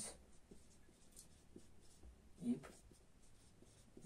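Felt-tip marker scratching faintly on a whiteboard as words are written.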